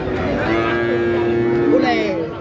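A young cow mooing: one long, steady bawl lasting about a second and a half, over crowd chatter.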